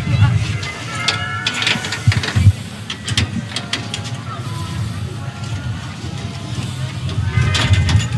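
A metal tool knocking against the side door of a bus-stop advertising panel as it is worked open: two sharp knocks about two seconds in, with a low hum underneath.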